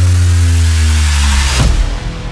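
Cinematic logo-reveal sound design: a loud, deep bass drone with a tone sliding downward over it, and a whoosh near the end.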